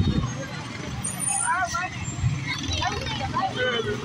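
Large truck's engine rumbling low and steady as the truck rolls slowly past, with people's voices and chatter over it.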